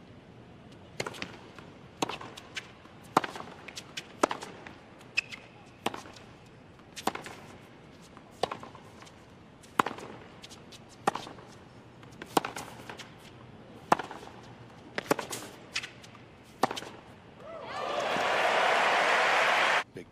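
Tennis ball struck back and forth with rackets in a long rally on a hard court, a sharp hit roughly every second. Near the end the crowd's applause swells up and becomes the loudest sound.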